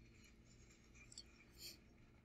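Near silence, with two faint, brief crinkles of heavy-duty aluminum foil being folded by hand, the second about a second and a half in.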